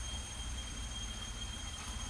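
Outdoor background: a steady low rumble with a faint, constant high-pitched drone of insects.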